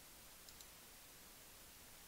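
Near silence with a faint steady hiss, broken about half a second in by two quick, faint clicks of a computer mouse button.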